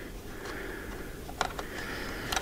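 Faint clicks and light rustling of a wiring harness and splitter connector being pushed through a hole in a motorcycle's batwing fairing, over a steady low room hum.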